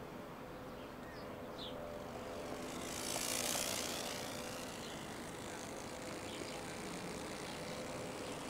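Quiet outdoor street ambience: a faint steady engine drone with a brief rushing swell about three seconds in, like a vehicle passing, and a few faint bird chirps.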